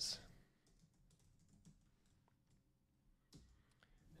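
Faint typing on a computer keyboard: scattered soft key clicks, a few more near the end.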